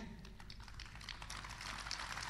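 A pause in a man's amplified outdoor speech: faint background noise with many small scattered clicks and ticks over a low steady hum.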